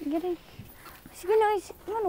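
A child's voice making two short calls, the second louder and more drawn out, about a second and a half in.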